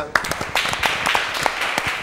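A small group of people clapping their hands: a short round of applause of quick, irregular claps.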